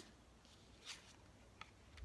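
Near silence, with a faint brush a little under a second in and a small tick after it as a tarot card is slid and turned over on a cloth-covered table.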